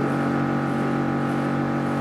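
A steady, unchanging drone made of several held tones, with no speech.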